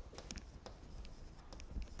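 Chalk tapping and scratching on a blackboard as words are written: a series of short, faint strokes.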